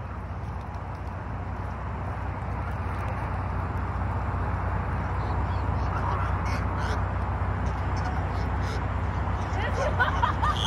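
Canada geese honking faintly a few times over a steady low rumble that slowly grows louder.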